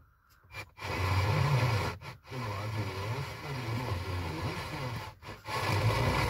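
Car FM radio tuning between stations: static hiss with faint, garbled station audio underneath. The radio mutes briefly a few times as the tuner steps through the frequencies, the signal too weak to carry a station name.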